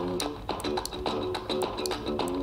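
Guitar music playing through a small portable Bluetooth speaker.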